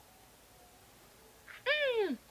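A single meow-like call near the end: a short puff, then one drawn-out pitched cry that rises briefly and slides down in pitch over about half a second.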